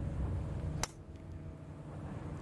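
A golf driver striking a ball off the tee: one sharp crack about a second in, over a low steady outdoor hum.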